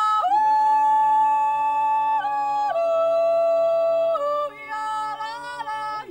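A mixed group of four voices, a woman and three men, yodeling without instruments in close harmony. They hold long chords that step to new notes every second or two, then break into quicker yodel leaps near the end.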